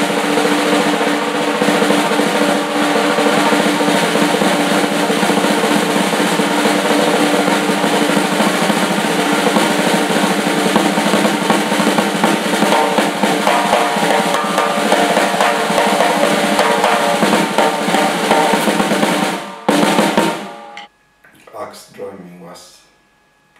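Drum kit played hard and fast, with rapid snare and tom rolls over ringing drums and cymbals. It stops abruptly about 20 seconds in, with one short final burst.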